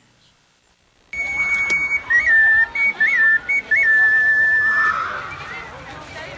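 Shrill whistle tones begin about a second in, held notes that step back and forth between two pitches like a short tune, over a steady outdoor background of crowd noise.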